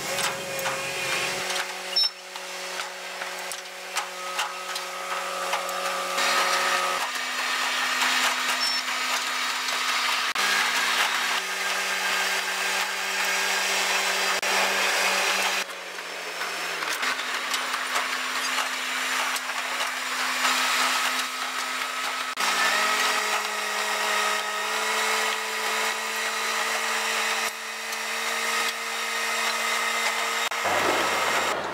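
Museum railway's diesel locomotive running and hauling the train, its steady engine note stepping up and down in pitch several times over a continuous noise of the wheels on the rails.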